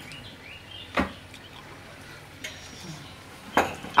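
Steel spoon clinking against a steel plate while eating rice gruel: one sharp clink about a second in, a fainter one midway, and another sharp clink near the end.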